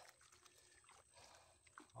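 Faint wet sloshing and gritty scraping of sand and gravel being worked by hand through a classifier screen over a bucket of water.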